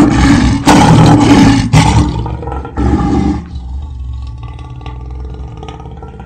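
Lion roaring: a run of loud roars in the first three seconds or so, then a quieter, lower rumbling that trails off.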